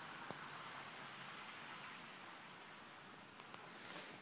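Faint steady hiss of outdoor air, with one sharp click shortly after the start and a short rustle near the end.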